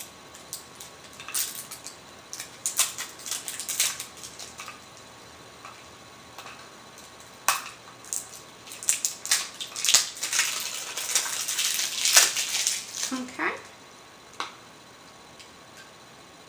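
Stiff clear plastic cosmetic packaging being cut and pried open with scissors: irregular crinkling, snips and clicks in two scattered stretches, the busiest in the second half.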